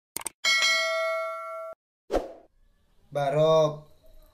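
Subscribe-animation sound effects: two quick mouse clicks, then a bright notification-bell ding that rings for about a second and cuts off suddenly. A short thump follows, and near the end a voice speaks briefly.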